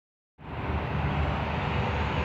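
Steady outdoor background noise, a low rumble under an even hiss, starting a moment in.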